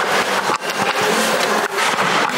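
Ambient noise inside a shopping centre: a steady, dense background noise.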